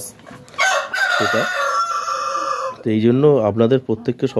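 A rooster crows once: a single long, drawn-out call of about two seconds, starting about half a second in.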